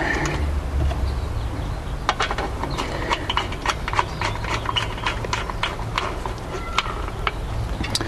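A screwdriver tightening the screw of a metal ground lug down on a wire: a run of small, irregular metal clicks and scrapes, starting about two seconds in and dying away near the end.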